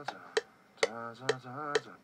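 Heavily auto-tuned sung vocal from a phone voice note playing back, its pitch held flat on notes and jumping between them, over a DAW metronome clicking about twice a second.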